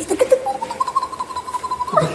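Chow Chow puppy giving one long, high-pitched whine that rises at first, then holds steady for about a second and breaks off near the end.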